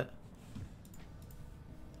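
A few faint, scattered clicks.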